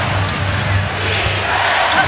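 Basketball being dribbled on a hardwood arena court, a few low bounces over steady arena crowd noise, heard through a TV broadcast.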